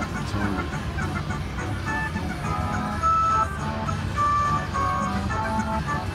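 Slot machine win celebration: a bright electronic jingle of short beeping notes plays while the win meter counts up credits, growing busier and louder from about two seconds in, over a steady low background din.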